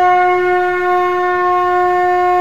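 Conch shell (shankh) blown in one long, steady note.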